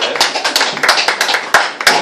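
A small audience applauding: a few people clapping, each clap heard separately, over a steady low hum.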